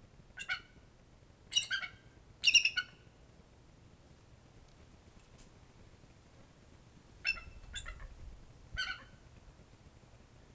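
A bald eagle calling in short, high chirps, six in all: three in the first three seconds, the loudest about two and a half seconds in, then a pause of about four seconds and three more near the end.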